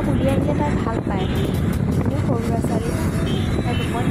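Wind buffeting in through an open car window, with steady road noise from the moving car and a voice talking over it.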